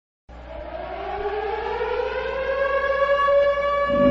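A siren winding up: a single tone that starts just after the beginning, rises steadily in pitch and grows louder.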